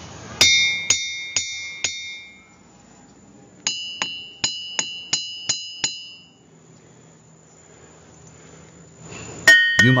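A hammer strikes boulders in the Ringing Rocks Park boulder field, and each blow rings out with a clear, bell-like, high pitch. There are four strikes about half a second apart. After a short pause comes a quicker run of about seven strikes on a rock with a higher ring.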